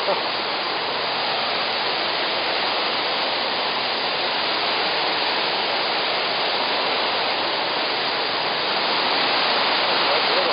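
Steady rush of the Krka River's waterfall cascades, growing a little louder about nine seconds in.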